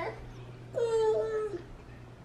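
A child's voice: one short, high, drawn-out sound, falling slightly in pitch, about a second in.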